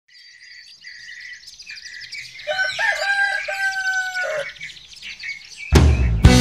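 Small birds chirping, with a rooster crowing in one long call from about two and a half seconds in. Near the end a rock band comes in loudly with guitars and drums.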